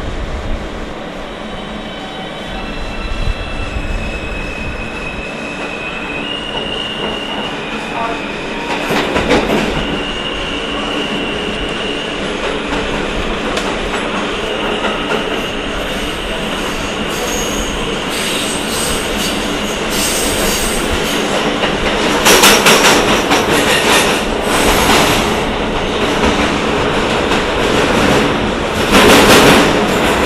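Alstom-built R160A New York City subway train running along the track, with high steady tones that step up and down in pitch through the first half. Louder rattling wheel-on-rail clatter comes in bursts from about two-thirds of the way in.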